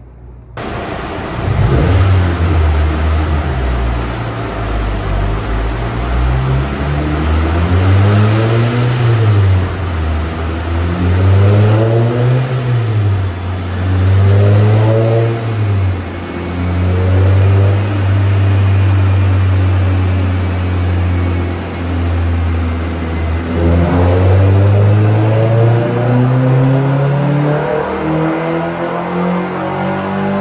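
Honda K24Z7 four-cylinder engine of a Civic Si running on a chassis dyno, revved up and down three times, then held at steady revs. Near the end the revs drop briefly and then climb steadily under load, the start of a dyno pull.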